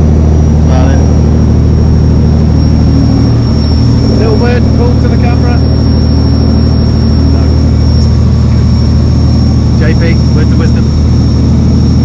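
Dive boat's engine running steadily under way, a deep steady drone with a thin high whine above it; the engine note shifts slightly about four seconds in.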